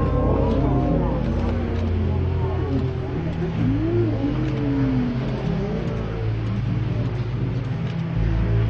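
Background music with a steady low bass that moves in steps, under wavering voice-like tones.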